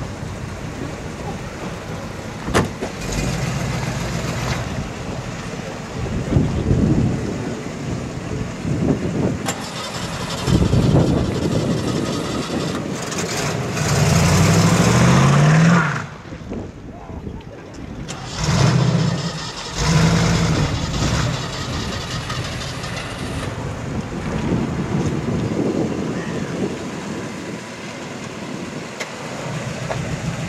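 A 1970s Chevrolet Camaro's engine revving and pulling away. The revs rise in one loud sweep midway that cuts off sharply, followed by more bursts of throttle.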